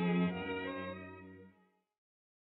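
Orchestral music with bowed strings holding a final chord that fades away and ends about a second and a half in.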